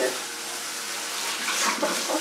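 Kitchen faucet running steadily into a stainless steel sink as raw chicken is rinsed under the stream.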